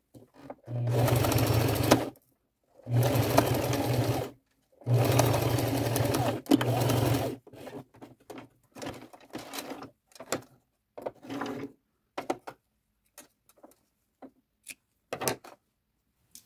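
Electric domestic sewing machine running a zigzag stitch in three runs of a second or two each, sewing stretched elastic down a fabric headband seam. After that come scattered short clicks and rustles.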